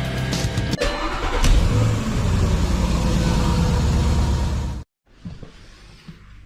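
A car engine running, loud and low, mixed with intro music; a sharp break comes just under a second in, and the whole mix cuts off suddenly about five seconds in.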